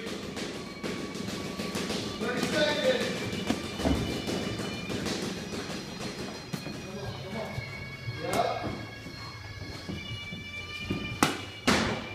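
Boxing-gloved punches landing during sparring: a few scattered thuds, the loudest two in quick succession near the end, over background music.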